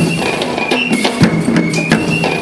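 School eastern cadet band playing: drums beating a fast, steady rhythm, with a short high note repeated over it.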